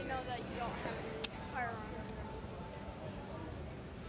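Indistinct voices of people talking in a large terminal hall over a steady background hum, with one sharp click about a second in.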